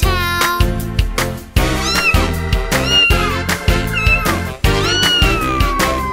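Cartoon cat meowing four times, about a second apart, starting about two seconds in; the last meow is long and falls in pitch. Upbeat children's music with a steady beat plays underneath.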